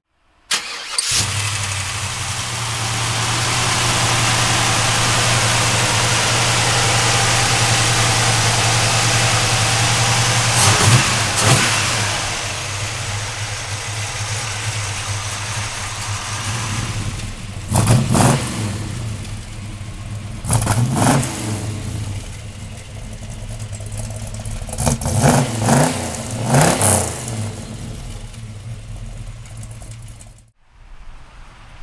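GM 502 cubic-inch big-block V8 crate engine with a Holley four-barrel carburetor, in a 1971 Chevrolet Chevelle. It starts about a second in, then idles steadily and is revved in a series of short blips, three of them close together near the end.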